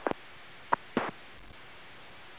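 Steady hiss of a VHF air-band radio recording, with three short blips in the first second.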